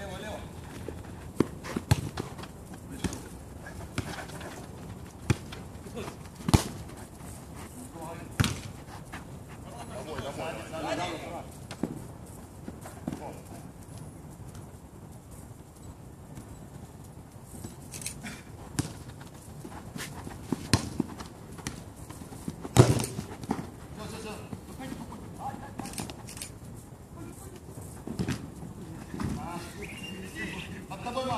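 Football being kicked on an artificial-turf pitch: sharp thuds of ball strikes at uneven intervals, every second or few, the loudest about 23 seconds in. Players call out now and then.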